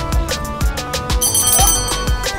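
Background music with a steady beat; near the end a brass hand bell rings for about a second with a high, sustained ring: the ringside timekeeper's bell marking a round.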